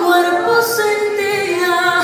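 A woman singing into a microphone, amplified in a hall, in long held notes with no clear backing instruments.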